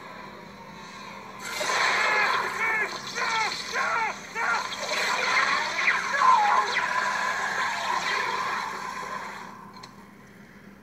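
Film soundtrack heard off a TV or monitor speaker: a rushing noise sets in about a second and a half in, with a run of short swooping tones about every half second, and fades near the end.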